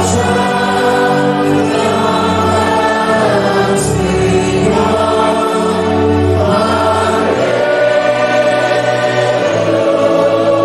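A congregation singing a hymn together, holding long notes that change pitch every second or two.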